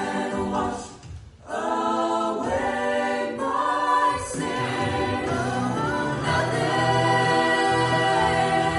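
Mixed vocal ensemble of men and women singing a worship song together in parts, with a short break about a second in before the voices come back in.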